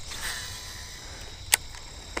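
Crickets chirring steadily in the background at night, with a soft rustle near the start and a single sharp click about a second and a half in.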